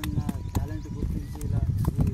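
A man speaking over a heavy low rumble, with short pauses between phrases.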